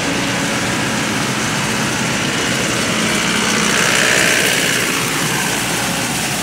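Jacto K3000 coffee harvester running while harvesting: a steady engine hum under the dense rush of its harvesting and cleaning machinery, swelling a little around the middle.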